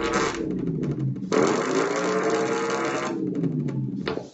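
Experimental electronic sound from the performers' string-and-harness sound device: sustained low tones that slowly bend in pitch, joined by a dense hissing noise from about a second in until about three seconds.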